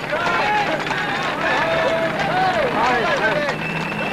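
Several people's voices talking and calling at once, overlapping.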